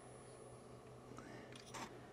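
Near silence: room tone with a faint steady low hum and one brief soft noise near the end.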